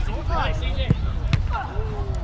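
Two sharp thuds of a football being kicked, about half a second apart near the middle, amid players' shouts across the pitch.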